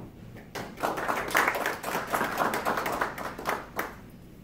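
Audience applauding at the end of a talk, starting about half a second in and dying away just before the end.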